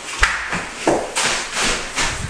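Footsteps and camera handling as the camera is walked through a room: a few soft knocks with a brief rustle between them.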